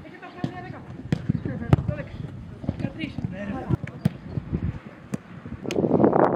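Footballs being kicked and passed on a grass pitch: a string of sharp, irregular thuds, with players' voices calling out in between. Near the end a rush of wind hits the microphone.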